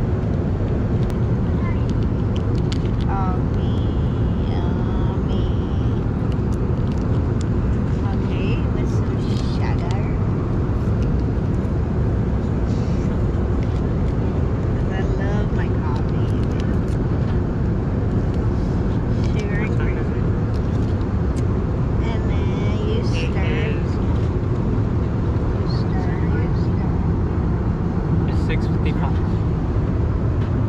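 Steady low rumble of a jet airliner cabin in flight, the constant engine and airflow noise, with occasional light clicks over it.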